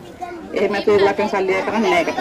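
Speech: people talking in a lively exchange, the voices starting about a quarter second in after a brief moment of low room hum.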